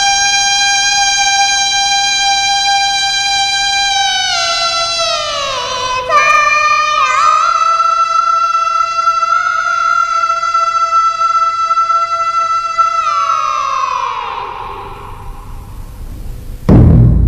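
A woman singing long, high, held notes, each one ending in a slow downward slide. The last note falls away and fades near the end.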